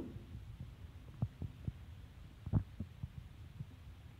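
Chalk knocking and sliding on a chalkboard as letters are written: a few short, soft taps scattered over a low steady hum.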